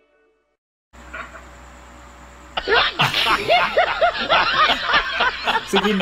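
A person laughing and squealing, rapid and high-pitched, starting about two and a half seconds in after a short stretch of silence and faint room noise.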